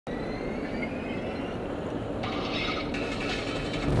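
Steady road and engine noise inside a car's cabin at freeway speed, a low rumble with hiss. A faint whine rises in pitch over the first two seconds, and the hiss grows brighter about halfway through.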